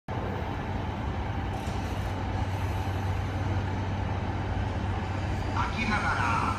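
E235 series electric commuter train moving slowly along the platform, a steady low running hum.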